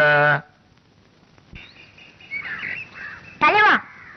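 Birds chirping faintly in outdoor ambience, after a man's voice ends just at the start; a brief loud voice cuts in near the end.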